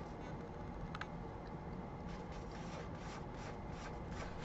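Soft rubbing and rustling of hands on a glossy paperback picture book held open, with a faint click about a second in.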